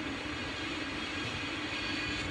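Steady background noise with a faint low hum, unchanging throughout: room tone in a pause between speech.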